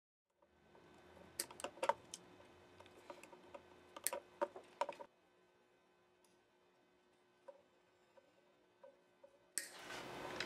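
Faint clicks and light taps of a Fender Jazz Bass's chrome control plate, with its pots and wiring, being handled, clustered over the first few seconds, then only a few scattered clicks. A faint steady hum sits underneath, and the background noise jumps up suddenly near the end.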